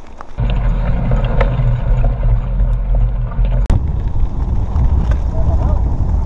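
Wind buffeting the microphone as a mountain bike picks up speed downhill on a rocky dirt trail, a loud low rumble that starts suddenly about half a second in, with the tyres and bike rattling over stones in scattered clicks. One sharp knock a little past the middle.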